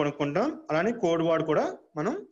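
A man speaking continuously in a lecturing voice.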